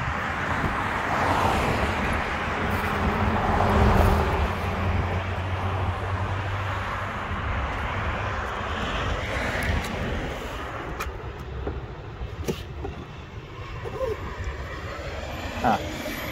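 Road traffic passing: a vehicle's rushing tyre and engine noise with a low rumble swells to its loudest about four seconds in and slowly fades. A couple of faint clicks come later.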